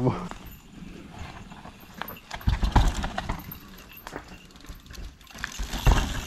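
Mountain bike moving over a rocky trail: scattered knocks and rattles of tyres and frame on stone, with two heavy low thumps about two and a half and six seconds in.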